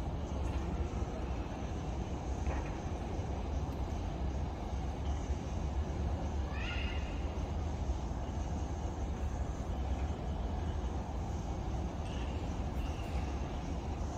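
Steady outdoor background noise with a deep rumble, and one short high call that rises in pitch about six and a half seconds in.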